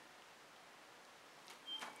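Near silence: room tone, with a faint brief sound near the end.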